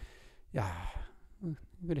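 A man's breathy sigh into a handheld microphone about half a second in, followed by a few short murmured syllables near the end. The sigh is one of exasperation.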